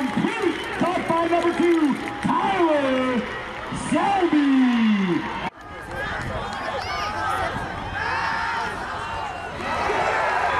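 High school football crowd voices: loud, drawn-out calls and shouts for the first half, then after a sudden break about halfway through, a quieter mix of many voices.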